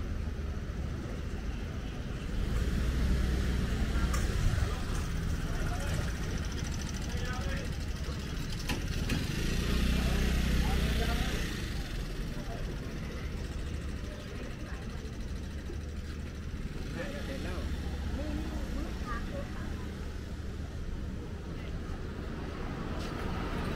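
Street traffic ambience dominated by motorbike engines, swelling louder twice, about three seconds in and again about ten seconds in, as they pass close. People's voices can be heard in the background.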